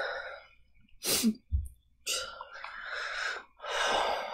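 A woman crying: a sharp sniff about a second in, then long, shaky, breathy sobs.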